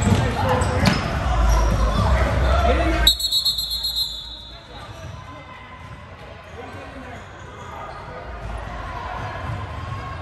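Basketball game in a gym: voices and a basketball bouncing on the hardwood floor, busy and loud for the first three seconds. A short high tone sounds about three seconds in, and after it the sound drops to quieter voices.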